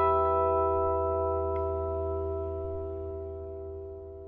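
An acoustic guitar chord ringing out after being strummed, several notes sustaining together and slowly fading away.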